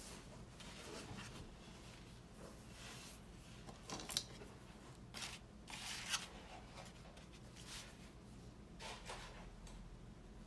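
Faint scratching of a marker tip writing on a wooden sign, in short separate strokes with pauses between them; the strongest strokes come about four and six seconds in.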